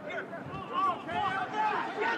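Softer voices under a stadium crowd: shouts and calls, quieter than the match commentary around them.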